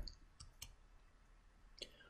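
Near silence: room tone with a few faint clicks, two about half a second in and one near the end.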